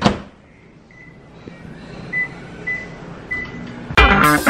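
Microwave oven door clicking shut, then four short high keypad beeps as a cook time of two minutes thirty is entered.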